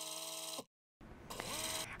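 Short broadcast transition sound effect: a held chord with a bright hiss that cuts off after about two-thirds of a second, then a brief silence and a rising whoosh swelling in.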